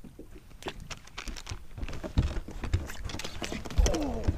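Scattered light clicks and knocks, with a dull thump about two seconds in and another near the end, from handling and movement on the deck of a fibreglass bass boat: the camera being picked up and jostled.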